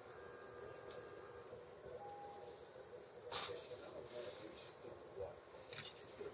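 Plastic Gundam model kit parts clicking together as they are pressed into place: a soft click about a second in, a sharp snap about three and a half seconds in that is the loudest sound, and another click near the end.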